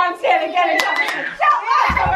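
A woman and young children chanting and calling out excitedly, with several sharp hand claps, in a stand-up, sit-down movement game; a deep thump near the end.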